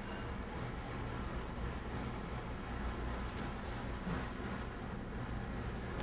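Steady low hum of room noise, with faint soft handling sounds of a plastic cutter pressed into rolled gingerbread dough on a wooden table.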